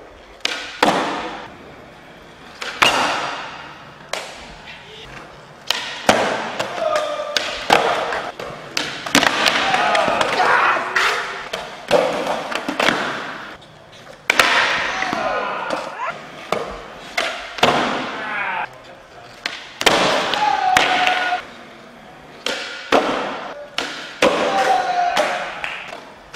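Skateboards popping and landing flat-ground flip tricks on a concrete floor: a run of sharp wooden clacks and slaps every second or two, with wheels rolling between them.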